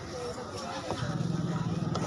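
A motor vehicle engine running close by comes in about a second in as a steady low engine sound and becomes the loudest thing, over background chatter of voices.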